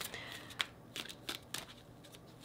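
A deck of tarot cards shuffled by hand: a quiet, irregular run of light card flicks and slaps.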